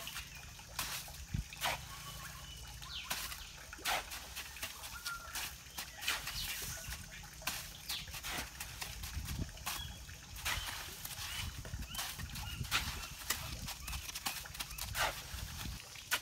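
A shovel scooping and scraping damp cement mix into a mould while a wooden stick tamps it down around a bamboo tube: irregular sharp scrapes and knocks, one or two a second, over a low rumble.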